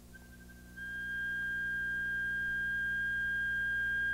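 Audio feedback howl from a handheld radio scanner tuned to a nearby room bug's transmit frequency: the bug picks up the scanner's own speaker and re-transmits it. It is a steady high whistle of one pitch that comes in faintly and grows louder about a second in. The howl shows that a bug is transmitting on that frequency close by.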